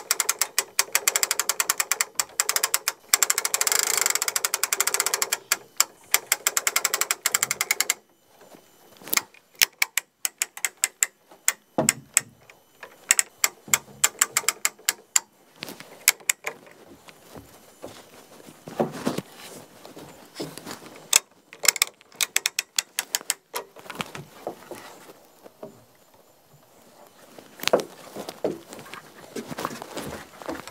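Hand-cranked winch on a log hoist ratcheting: a fast, steady run of pawl clicks for the first eight seconds or so, then slower, scattered clicks and knocks.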